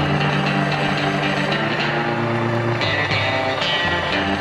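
Background music with sustained chords that change every couple of seconds.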